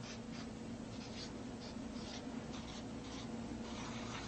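Short, scratchy strokes of a pen or marker writing on a board or sheet, a dozen or so irregular strokes, over a faint steady hum.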